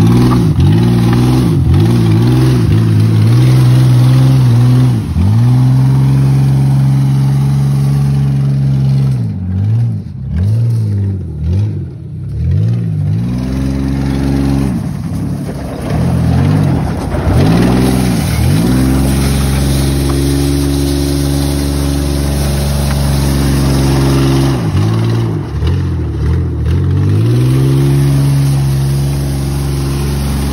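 Ford Bronco II's V6, with no exhaust on it, revved hard over and over as the truck spins its tyres through loose gravel. The engine pitch drops and climbs back many times, in quick runs of blips in the middle and again near the end, with steadier held revs between.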